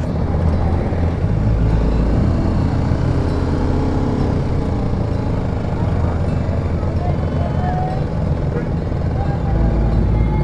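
Motorcycle engine running steadily while riding slowly through city traffic, with the noise of the surrounding vehicles.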